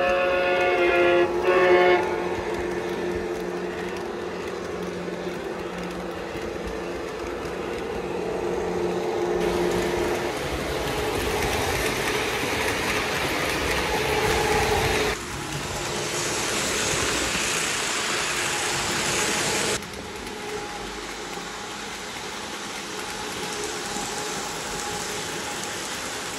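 O-gauge Lionel Acela model train running on three-rail track, a steady rolling and motor noise that changes abruptly three times over the passes. A brief pitched horn sounds in the first two seconds.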